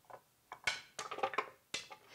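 A few light clicks and taps, spread through about a second and a half, as chopped ginger is scraped off a plate and drops into a blender jar.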